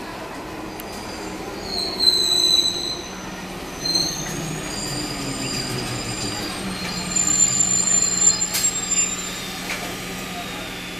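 Old EMU suburban electric train running into the platform and braking, its wheels and brakes squealing high-pitched in several bouts. The squeals are loudest about two seconds in and again from about seven to nine seconds in, over a low steady hum and rumble of the train.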